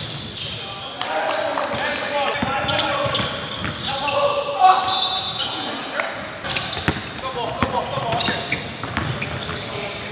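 Indoor basketball game: players' indistinct voices and shouts over a ball bouncing on the gym floor, with sharp knocks scattered through.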